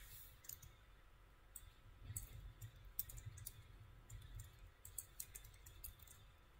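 Faint, irregular clicks of single computer keystrokes, spaced a fraction of a second to about a second apart, over quiet room tone.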